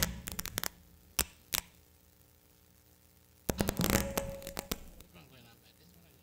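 Handling noise from a handheld wireless microphone: a few sharp knocks and bumps in the first second and a half, then a denser cluster of knocks and rustling about three and a half seconds in.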